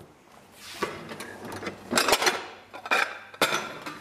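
Black ceramic Maxwell & Williams dinner plates clinking and knocking together as they are taken from a stack. There are several sharp knocks with short ringing, the loudest about two seconds in and another near the end.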